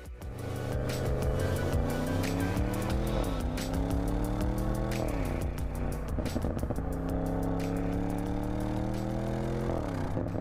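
Audi RS6 Avant Performance's twin-turbo V8 accelerating, revs climbing steadily and dropping with an upshift about three seconds in, another about five seconds in, and a third near the end.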